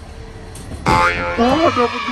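A claw machine prize box dropping into the prize chute, landing with a single sharp thump about a second in.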